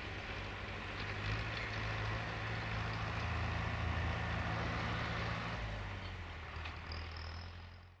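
A steady low engine hum with a faint rushing noise, stronger in the middle and fading out at the end.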